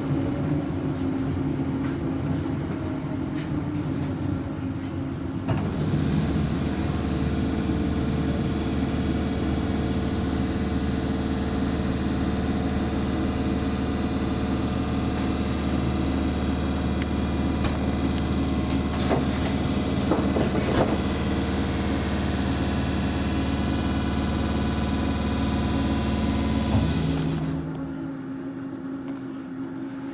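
Inside a Class 317 electric multiple unit: a steady hum and whine come on about five seconds in and cut off near the end, leaving a quieter rumble. There are a few brief clicks and squeals around two-thirds of the way through.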